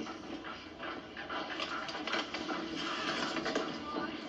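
Soft rustling and handling sounds of paper as a sheet or envelope is passed across a desk and taken in hand, over a steady hiss.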